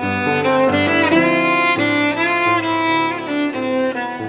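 Violin playing a bowed melody in long notes with vibrato over piano accompaniment.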